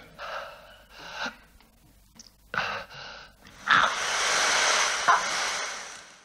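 A man breathing in ragged gasps: a few short, shaky breaths, then a louder, harsh breath drawn out for about two seconds near the end.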